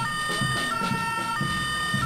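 Electronic two-tone police siren of a toy Playmobil police car, switching back and forth between a lower and a higher tone about every two-thirds of a second.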